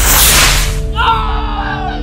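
A sharp whoosh as a toy rocket is launched, fading within a second, followed by a long falling tone over background music.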